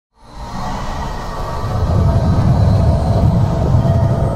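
Cinematic logo-intro sound effect: a deep rumbling swell that rises out of silence and keeps building, with faint held tones above it.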